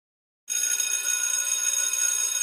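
Bell-like sound effect for an animated intro logo: a bright ringing of several high pitches at once, starting suddenly about half a second in and holding steady.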